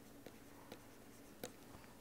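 Near silence with a few faint ticks of a stylus writing on a tablet.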